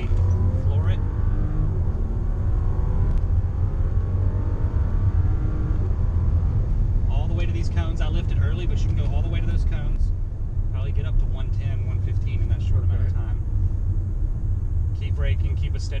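Bentley Bentayga's twin-turbo 6.0-litre W12 engine accelerating hard, heard inside the cabin. Its pitch climbs steadily for about the first six seconds, then it settles into a steady rumble with road noise.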